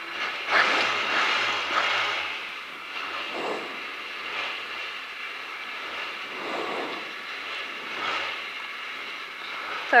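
Rally car's engine idling while the car sits stationary, heard from inside the cabin, with a few brief swells in level.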